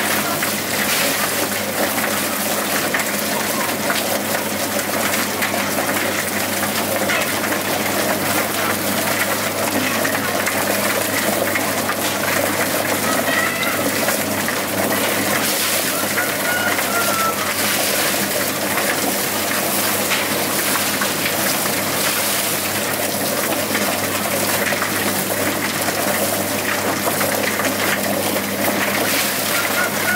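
Drum-type chicken plucking machine running: its motor hums steadily under a continuous rushing, splashing wash as the wet carcasses tumble against the spinning rubber plucking fingers.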